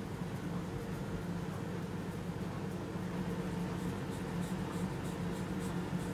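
Faint, light scraping strokes of a small facial razor drawn over the skin of the brow and cheek, over a steady low hum in the room.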